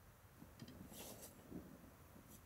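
Near silence, broken by a few faint soft rustles about half a second to a second and a half in.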